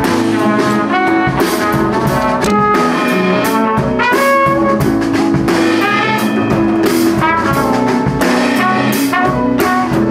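Live band playing an indie-jazz tune: a trumpet carries a moving melodic line over acoustic guitar and a drum kit, with frequent cymbal and drum hits.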